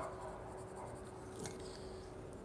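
Faint scratching of a colored pencil being stroked across paper as a page is shaded in.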